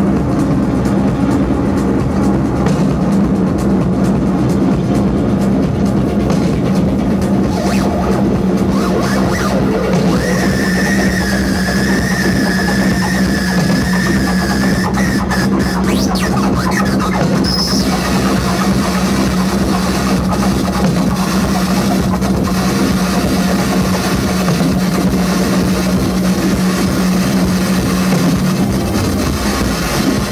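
Live electronic music from modular synthesizers: a loud, steady low drone under a dense, noisy texture. A high held tone comes in for about five seconds midway, and the low drone slides down in pitch near the end.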